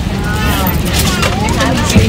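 Voices of people talking inside an airliner cabin over the aircraft's steady low hum.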